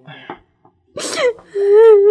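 A high-pitched voice in a radio drama making non-word sounds. About a second in comes a sharp breathy outburst, followed by a long held wailing vowel.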